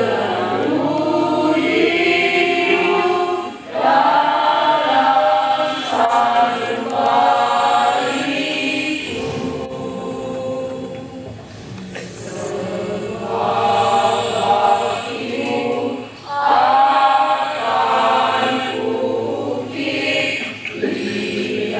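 A choir of many voices singing a song with long held notes. The phrases break briefly about four seconds in and again about sixteen seconds in.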